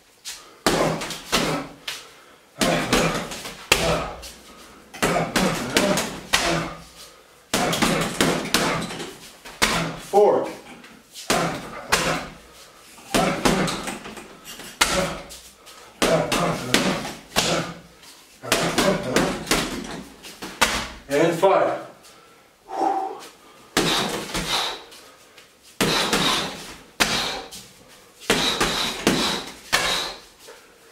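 Boxing gloves and bare shins hitting a hanging heavy bag, a dull slam about once a second, as rounds of punches each followed by a low kick.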